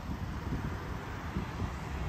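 Wind buffeting the microphone outdoors: a low, uneven rumble with a faint hiss above it.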